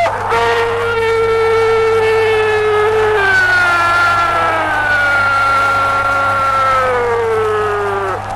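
A Spanish-language radio football commentator's goal cry on an old recording: one long held shout that lasts about eight seconds and slowly sinks in pitch. A steady low hum sits under it.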